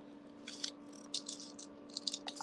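Small craft beads clicking and rattling against each other in quick clusters as they are handled and threaded, starting about half a second in.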